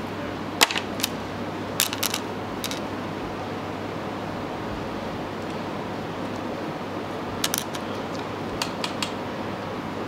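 A few short, sharp clicks and snips from hands working nylon fishing line and scissors while tying a trace: a cluster in the first three seconds and another near the end, over a steady room hum.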